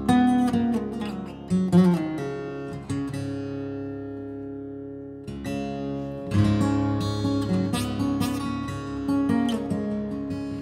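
Steel-string acoustic guitar played solo, tuned to double drop D a half step down: strummed chords and picked notes from a D-Mixolydian riff. A chord is left to ring and fade from about three to five seconds in, then the strumming starts again.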